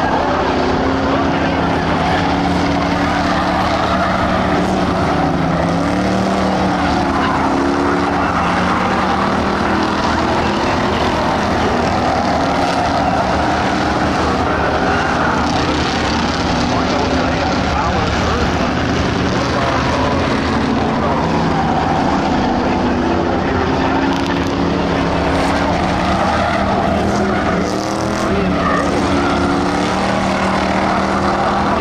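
A pack of Ford Crown Victoria dirt-track stock cars running laps with their V8 engines. The engines keep up a steady, loud sound whose pitch rises and falls as the cars go around the oval.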